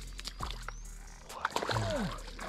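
Light splashing and sloshing of shallow water as a hooked fish is grabbed by hand at the water's edge, over a steady low rumble.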